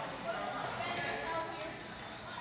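Indistinct talking of several people, echoing in a large gymnasium.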